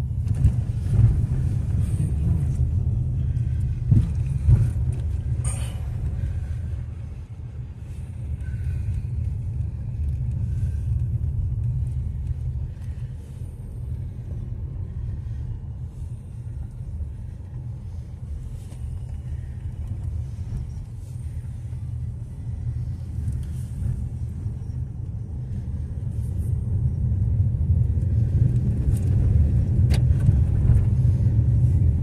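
Low rumble of a car's engine and tyres heard from inside the cabin while driving along a narrow lane, with a few knocks in the first six seconds. The rumble eases in the middle and grows louder again near the end.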